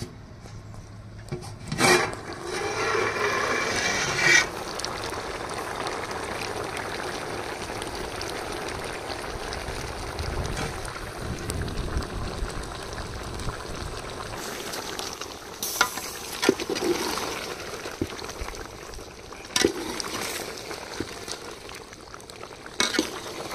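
A large aluminium pot of chicken-feet curry boiling, bubbling steadily. There is a loud metal clank about two seconds in, and near the end a few knocks of a metal ladle against the pot as it is stirred.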